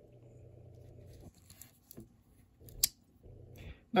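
Small pen blade of a vintage Victorinox Ranger Swiss Army knife folding shut with one sharp snap of its backspring, nearly three seconds in. Light clicks and handling rustle of the knife come before it.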